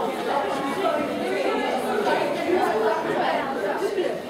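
Indistinct chatter of several voices overlapping, with the echo of a large room.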